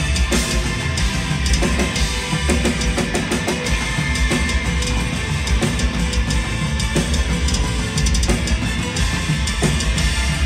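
Heavy metal band playing live and loud: a drum kit with a driving bass drum under distorted electric guitars.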